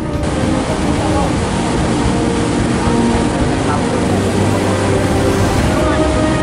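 Many people talking at once, a crowd's chatter, over a steady low rumbling noise.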